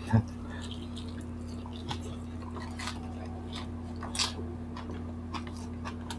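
Close-up eating sounds of people chewing food eaten by hand: scattered short wet smacks and clicks, one louder just after the start, over a steady low hum.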